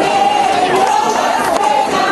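Many voices at once: a folk dance ensemble singing together in a group, loud and steady, with long held notes.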